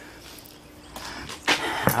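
Quiet background with a faint low hum, then a few small clicks and one sharp click near the end.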